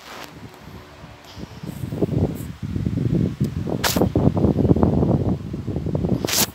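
Loud, low rustling and rubbing right against the phone's microphone, building up about two seconds in and lasting a few seconds, with a sharp click near the four-second mark.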